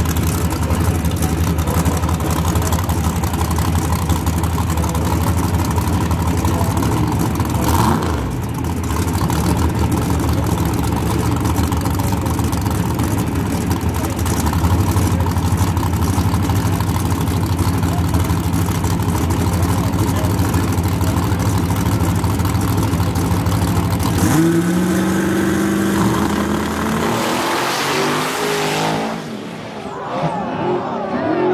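Turbocharged Ford Mustang drag car's engine idling with a rough, uneven beat, then revving up hard about 24 seconds in, holding at high revs, and climbing again as the car launches. The sound breaks off just before the end.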